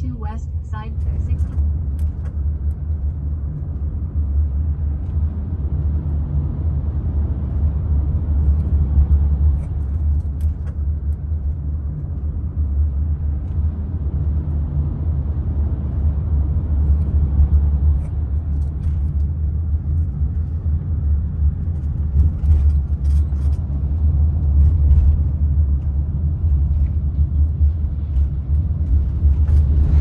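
Road noise heard inside a moving car: a steady low rumble of engine and tyres.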